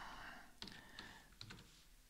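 Computer keyboard being typed on: a few faint, separate keystrokes as a short word is entered.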